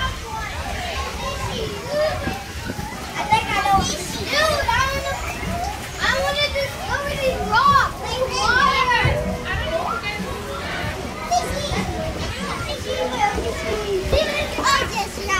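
Children's voices: several kids chattering and calling out at once, high and overlapping, with no clear words.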